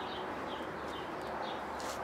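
Small birds chirping in the background: short, high chirps repeated every half second or so over a faint, steady outdoor hiss.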